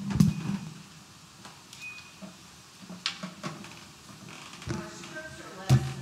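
Microphone handling thumps as a handheld microphone is set down: one loud, deep thump about a quarter second in and another near the end, with a few small knocks and faint low voices between.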